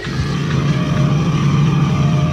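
Harsh lo-fi raw black metal/noise recording: a layered drone breaks abruptly into a louder, dense, distorted wall of noise with a heavy low rumble.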